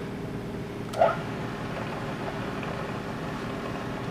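Vertical milling machine running steadily with its end mill spinning, a low machine hum, with a short click about a second in.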